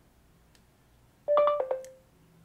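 Short two-note electronic chime from a Samsung Galaxy Z Fold 7 as Google voice typing opens and starts listening, the second note a little lower; it sounds about a second and a quarter in, after near silence.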